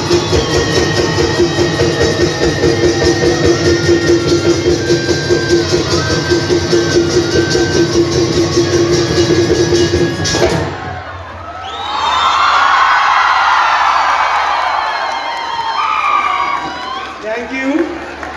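Live Bihu music: dhol drums beating a fast, dense rhythm under a steady held note and a stepping melody line, cutting off abruptly about ten seconds in. A crowd then cheers and shouts.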